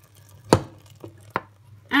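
A metal saucepan knocking against the rim of a stainless steel mixer bowl as hot milk is poured in. There is a sharp knock about half a second in, the loudest, then a faint tap, then a second sharp knock about a second after the first.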